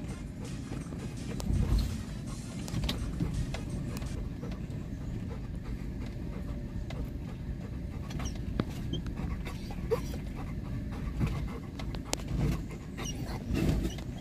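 Car cabin noise while driving slowly over a rough dirt road: a steady low rumble with scattered short knocks and rattles from the bumps.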